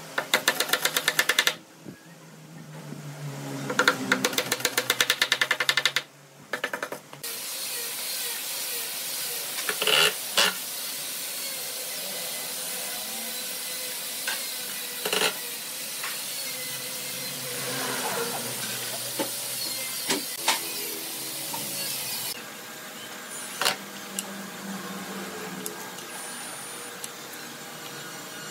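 Hardware being fitted to a wooden cradle: two bursts of rapid tapping near the start, then a cordless drill driving screws, with short whirs that rise and fall and sharp clicks, over a steady hiss.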